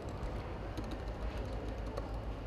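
Computer keyboard keys clicking in faint, irregular taps as code is typed and deleted, over a steady low hum.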